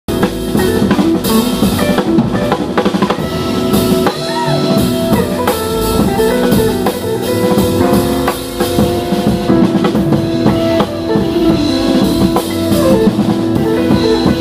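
Jazz drum kit played with sticks: fast snare, bass drum and rimshot hits under cymbal wash. Other band instruments sustain pitched notes beneath the drums.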